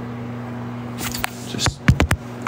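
A low steady hum, with a click about a second in and a few sharp knocks and rubs near the end as the phone is handled and turned around.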